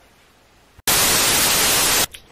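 Faint room tone, then about a second in a loud burst of hissing static starts abruptly and cuts off suddenly about a second later, right at a cut in the picture.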